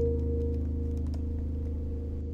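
Ambient score music: one soft sustained chord, a bright upper note ringing over deep low notes.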